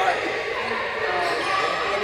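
A woman talking into a handheld microphone.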